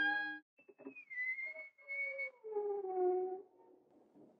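Whistle-like tones on the soundtrack. A high tone dips and holds for about a second and a half, then a lower tone slides slowly downward and stops about three and a half seconds in.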